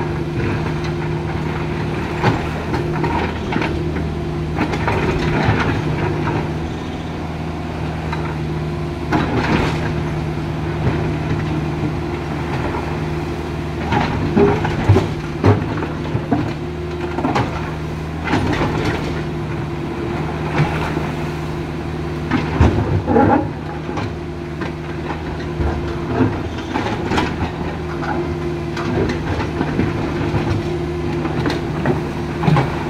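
Cat mini hydraulic excavator's diesel engine running steadily under load while its steel bucket digs into river rocks and gravel, with irregular knocks and clatters of stone against the bucket, loudest about halfway through and again about three quarters of the way in.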